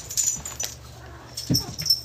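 A pet animal gives a short cry that falls in pitch about one and a half seconds in. A few light clicks come in the first half-second.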